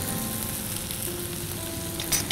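Chopped tomatoes and onions sizzling steadily in hot oil in a nonstick pan as the tomato-onion masala base sautés.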